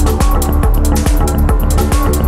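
Psytrance DJ set playing: electronic dance music with a steady kick drum about twice a second over a heavy rolling bass line.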